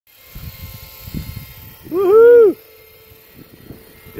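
A single short animal call about two seconds in, rising and then falling in pitch, over low rustling and wind on the microphone.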